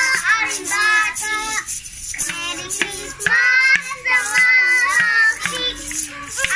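Several children singing a Christmas carol together, with homemade percussion rattling and tapping along in a steady beat.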